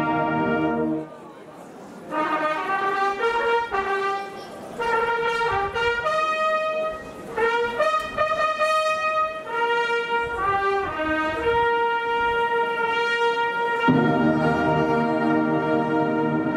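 A large brass band (trumpets, trombones, horns) plays slow music in held notes. A full sustained chord breaks off about a second in. The higher brass then carry the melody alone, and the low brass come back in with a loud held chord about two seconds before the end.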